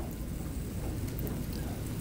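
Steady background hiss and low rumble of a lecture room, with a few faint clicks.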